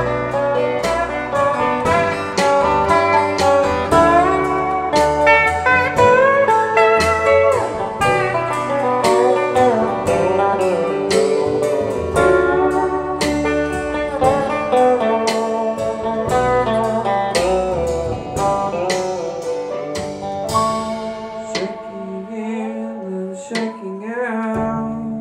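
Instrumental break: a lap steel guitar plays a sliding solo over the band's steady rhythm. The band thins out near the end.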